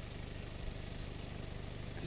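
Steady low rumble with a faint, even pulse.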